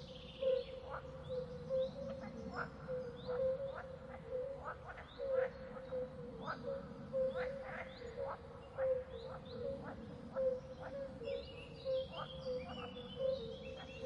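Faint outdoor ambience of small animals calling: short chirps repeating about twice a second over a steady faint tone.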